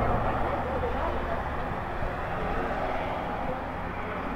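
Steady rush of road traffic from a nearby highway, easing off slightly toward the end.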